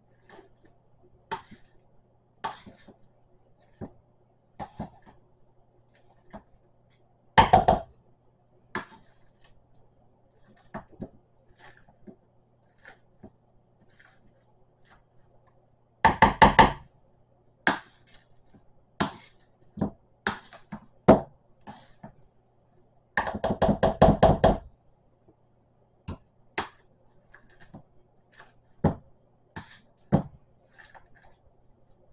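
Boiled potatoes being mashed by hand with a metal potato masher in a bowl: scattered single knocks of the masher against the bowl, with three bursts of rapid strikes lasting about a second each, about a quarter of the way in, about halfway, and about three-quarters of the way through.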